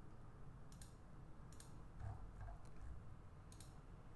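Several faint computer mouse clicks, a second or so apart, as sketch lines are selected one by one.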